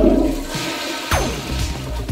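A rushing water sound effect, with a low rumble at the start and a single falling whoosh about a second in.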